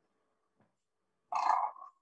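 A single short, loud vocal sound, about half a second long, about a second and a half in.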